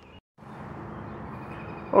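Steady background noise with a faint low hum of a distant engine, after a moment of dead silence near the start.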